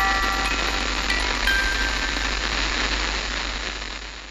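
Intro sound effect of steady hissing static over a low hum, with a few held chime-like music notes fading out in the first second or two. The static fades slightly toward the end.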